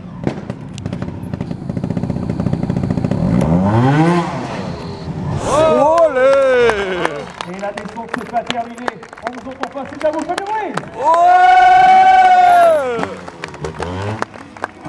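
Trials motorcycle engine revving in rising blips over the first few seconds, with sharp clicks and pops. Later come voice-like exclamations and, near the end, one long drawn-out shout.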